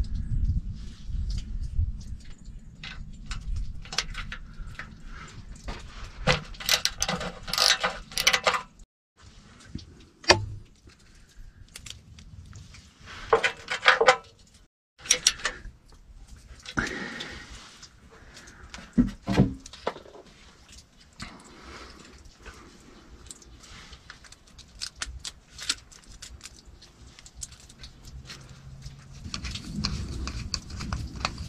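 Hand tools and brass fittings clicking, tapping and rattling as a temperature sensor is fitted into a brass tee on a transmission cooler line. The sounds come in irregular bursts, and the sound drops out briefly twice.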